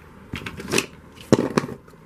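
Plastic Lincoln Logs roof and window pieces clattering and scraping against a cardboard box, in two short bursts with a sharp knock in the second.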